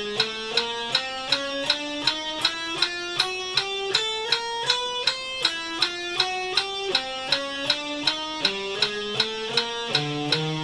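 Electric guitar playing a chromatic four-notes-per-string drill on frets 5-6-7-8, one picked note per beat at 160 beats a minute. The notes climb up across the strings, then work back down.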